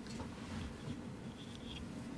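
Faint rustle of papers at a desk microphone over a low, steady room hum.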